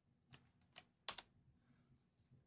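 Near silence broken by a few faint, sharp clicks at the computer, the loudest a quick pair just past a second in.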